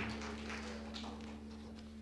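A lull on stage: the band's sound system gives off a faint steady hum, with a few soft taps.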